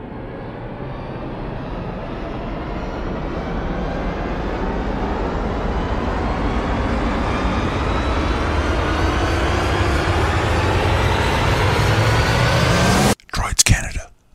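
An intro sound-effect riser: a rushing swell that builds steadily in loudness and pitch, then cuts off suddenly about a second before the end, followed by a few short, choppy sounds.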